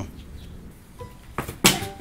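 One sharp knock about a second and a half in, from a styrofoam slab being set down on cardboard boxes; otherwise fairly quiet.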